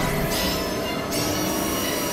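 Experimental synthesizer noise music: a dense hissing drone with high, squealing tones that slide in pitch, and a steady high tone that sets in about a second in.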